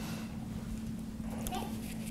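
Room tone in a pause: a steady low electrical hum, with faint rustles and a soft click or two from the pages of a Bible being handled at a wooden pulpit.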